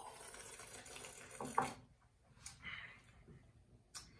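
Coffee slurped from a small ceramic cup, drawn in noisily with air as in a tasting, ending in a short sharp sound about a second and a half in. A fainter breath follows, and a light knock near the end as the cup is set down on the wooden table.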